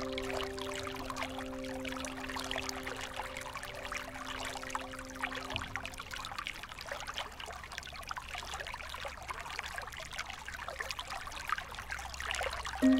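Running water trickling steadily, with held notes of calm instrumental music over it that die away about halfway through, leaving the water on its own.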